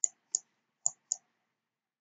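Computer mouse button clicking: four short, sharp clicks in a little over a second.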